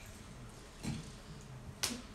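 A quiet pause with one short, sharp click near the end, and a fainter low sound about a second in.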